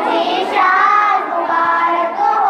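Naat being sung: a voice draws out a melodic line, bending and holding the pitch, with no drumbeat.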